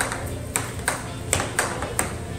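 Air hockey rally: plastic mallets hitting the puck and the puck clacking off the table rails, about five sharp clacks in quick, irregular succession.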